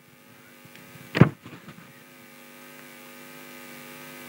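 Steady electrical hum carried through the microphone sound system, a stack of even tones that grows slightly louder, with one brief vocal sound about a second in.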